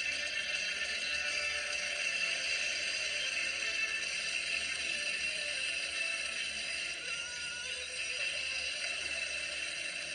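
Cartoon soundtrack playing from a television speaker: background music under a steady noisy wash.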